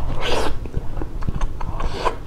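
Close-miked mouth sounds of eating an orange ice pop on a stick: a wet bite and suck in the first half second, then chewing with many small wet mouth clicks, and another wet slurp near the end.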